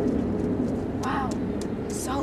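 Steady low outdoor rumble, with a short vocal sound about a second in.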